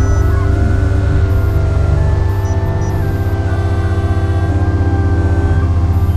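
Film score music: a loud, rapidly pulsing low drone under several long held tones.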